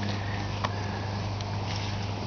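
A steady low hum under a background hiss, with a few faint clicks.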